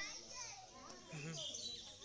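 Background voices of onlookers talking at a distance, children's voices among them.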